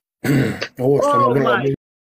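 A person clearing their throat: a short scraping sound, then about a second of voiced throat sound.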